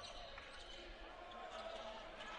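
Faint court sound of a basketball being dribbled on a hardwood floor, echoing in a large, mostly empty arena.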